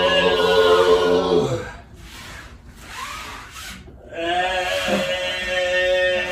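Overtone singing: a held, droning voiced tone with strongly emphasized overtones, which drops in pitch and stops about one and a half seconds in. After a quieter gap of about two and a half seconds, a new held overtone-sung tone begins.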